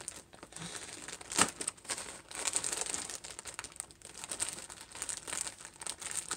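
Plastic packaging crinkling and rustling as it is handled and picked open by hand, with one sharp snap about a second and a half in.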